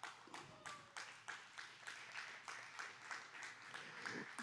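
Faint clapping from a few people in the congregation, about three claps a second.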